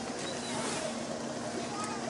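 Steady drone of an idling boat engine, with faint voices of other people in the background.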